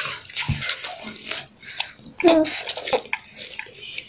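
A child slurping and chewing instant noodles at close range: a run of short, wet sucking and smacking sounds, loudest a little over two seconds in.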